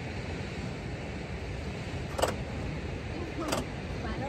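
A steady low rumble of wind buffeting the microphone, with two sharp clicks about two and three and a half seconds in.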